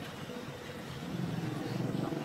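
A low engine drone that comes in about a second in and grows steadily louder.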